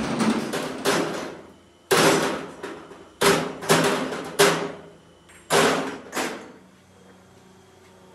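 A series of about seven hammer blows at an uneven pace, each with a short ringing tail, stopping about six seconds in.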